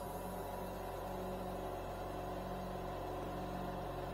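Steady low hum with a faint hiss from a lit bead-making torch and its oxygen supply running, unchanging throughout.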